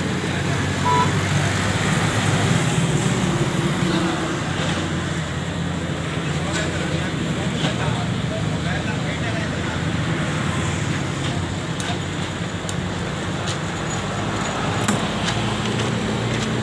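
Steady road traffic noise with a constant low engine hum underneath, and a few faint clicks near the end.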